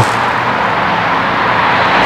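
Steady road-traffic noise: an even hiss and rumble.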